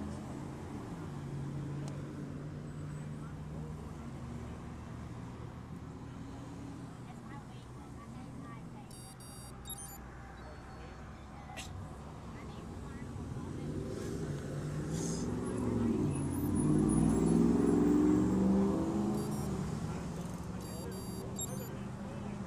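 Passing road traffic: car engines running and driving by, with one vehicle growing louder past the middle and going by close about three-quarters of the way through, then fading.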